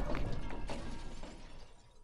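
Shattered glass tinkling and settling after a smash, with a few sharp clinks about a quarter, three-quarters and one and a quarter seconds in, dying away to nothing by the end.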